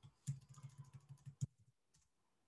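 Typing on a computer keyboard: a quick run of keystrokes with one louder key strike, stopping about a second and a half in.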